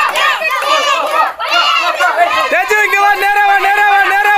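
A crowd of people shouting and calling over each other. From about two and a half seconds in, one voice holds a long, steady call above the rest.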